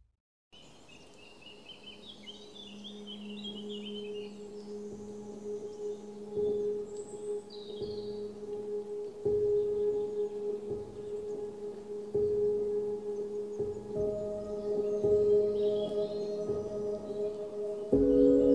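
Ambient soundtrack music: sustained low bowl-like drone tones that swell slowly, with a higher tone joining about three-quarters of the way through, and birds chirping faintly in the background.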